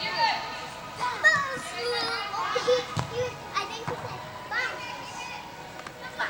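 High-pitched voices of players and onlookers shouting and calling out during an indoor soccer game, with a single thump about halfway through.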